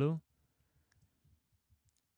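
The end of a spoken word, then near silence with a few faint clicks.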